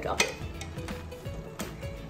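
A few light clicks of chopsticks against a stainless-steel hot pot as a piece of cooked duck blood is lifted out of the simmering broth.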